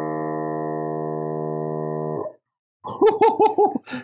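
Milwaukee M18 cordless tire inflator's compressor running with a steady hum while filling a bicycle tire, then cutting off by itself about two seconds in. It is the automatic shut-off at the set pressure, reached so fast that the tire overshoots the 10 PSI target.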